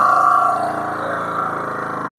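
Motorcycle engine running at a steady speed while being ridden, a constant hum with a fast, even firing pulse, easing slightly about halfway through.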